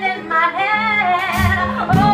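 A woman singing a Christmas pop song live over instrumental accompaniment, her held notes bending and wavering in pitch. A deeper bass note comes in about one and a half seconds in.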